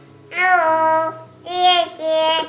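A young child's high voice holding two long, loud notes, sing-song, with soft background music underneath.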